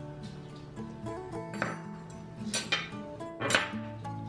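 Light background music, with a few sharp clinks in the second half as a table knife is set down on the table beside a plate.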